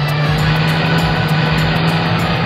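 An SUV's engine running with road noise as the vehicle drives off, under a soundtrack of background music.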